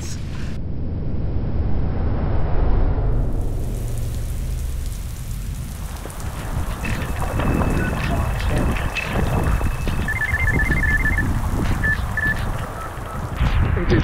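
Heavy rain pouring onto a lake, a steady hiss, with a low rumble under it in the first few seconds. A run of short high beeps sounds about ten seconds in.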